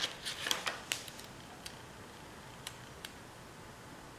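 Paper sticker sheets and stickers handled by hand: a quick flurry of crackles and small clicks in the first second, then a few light ticks.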